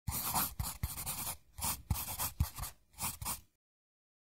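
Writing on paper: a series of quick scratching strokes with soft taps where the tip touches down, stopping about three and a half seconds in.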